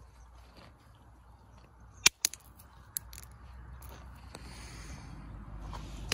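A hammerstone striking a black, flint-like stone to test whether it will flake: two sharp stone-on-stone cracks about two seconds in, a fifth of a second apart, then a lighter tap about a second later. A flake breaks off.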